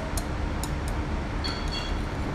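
A steady low rumble with a few light clicks around the start and a short, high ringing clink about a second and a half in.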